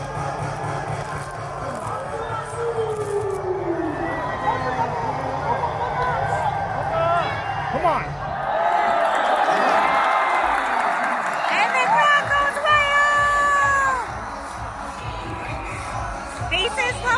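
Baseball stadium crowd cheering and chanting over music from the stadium speakers, many voices at once. It swells louder about halfway through, with a long held note near the end before it drops back.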